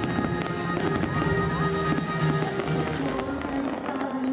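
Firework-show soundtrack music playing over loudspeakers, with repeated firework bangs going off throughout.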